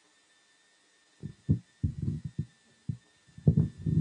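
About a second in, low dull thumps and rumbles start, irregular and close on the microphone: handling noise from a microphone being moved or gripped.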